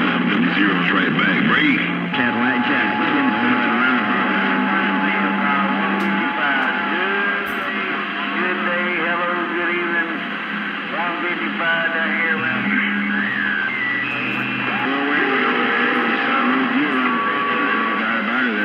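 CB radio receiver audio on channel 28 pulling in distant skip stations: several voices garbled and talking over each other, with steady whistle tones coming and going and music mixed in. The sound is narrow and tinny, with nothing above the radio's speech band.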